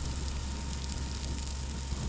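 A grass fire burning: a steady hiss with fine crackling and a low rumble underneath, starting abruptly.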